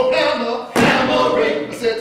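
Several voices singing and chanting in short phrases and held notes, punctuated by heavy thumps on the stage that recur about every second and a quarter, one landing a little before the middle.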